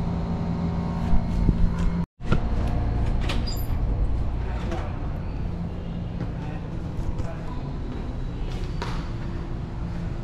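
Steady low background hum and rumble, with a brief break about two seconds in, and a few light clicks later on.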